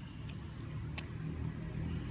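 Low, steady outdoor background rumble, with one sharp click about a second in and a couple of fainter ticks before it.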